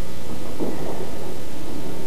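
Steady, fairly loud hiss with a low electrical hum underneath: the background noise of the recording.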